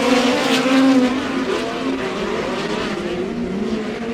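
A field of midget race cars' four-cylinder engines running hard on a dirt oval, their notes rising and falling as the cars pass and lift for the turns. They are loudest in the first second, then settle a little lower.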